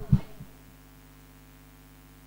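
A low thump from a handheld microphone being handled, with a softer one just after, then a faint steady electrical hum from the sound system.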